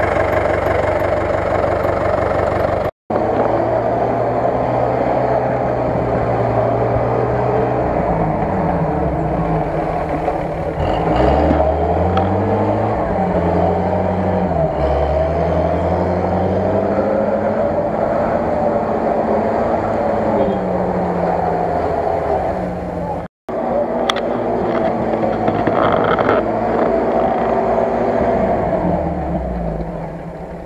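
UAZ-469 off-roader's engine revving up and down as it ploughs through deep mud and water, its pitch repeatedly rising and falling. The sound cuts out briefly twice.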